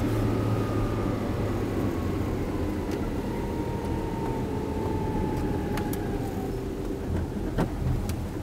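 Tata Nano's 624 cc two-cylinder petrol engine and road noise heard from inside the small cabin while driving, a steady low rumble with a faint whine that slowly falls in pitch over several seconds.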